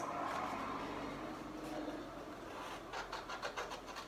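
Sheet of paper being handled and rustled, with a run of short crisp crackles in the second half.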